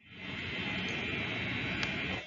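Steady background hiss, room noise with no distinct event in it, fading in just at the start and holding level.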